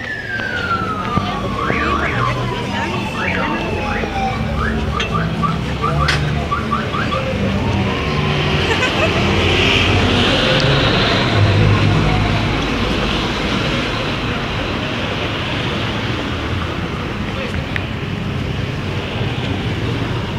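A siren winding down, its single tone falling steadily over the first four seconds, over the steady din of street traffic and a crowd on foot.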